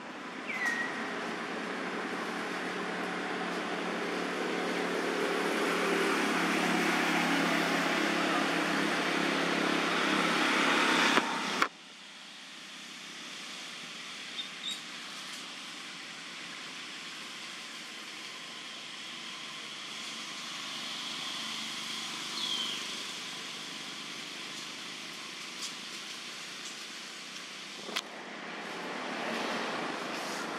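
A motor vehicle running nearby, growing louder over about ten seconds and then cut off abruptly; after that, steady, quieter outdoor background with a couple of short high chirps that glide down in pitch.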